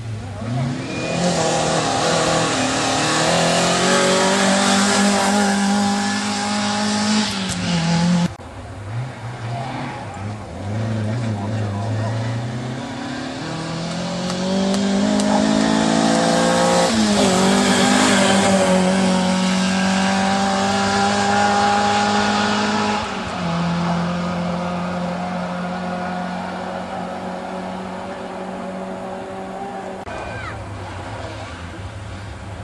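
Mk2 Ford Escort rally car's engine revving hard through the gears, the pitch climbing and dropping with each change. It cuts off sharply about eight seconds in, then builds again and settles into long held notes near the end.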